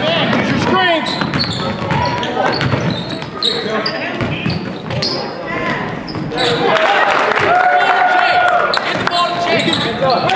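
Basketball dribbled and bouncing on a hardwood gym floor during play, among indistinct voices in a large echoing hall. A steady held tone sounds for about two seconds in the second half.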